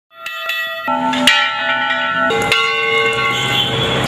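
Bells ringing: several struck notes, each ringing on and overlapping the next.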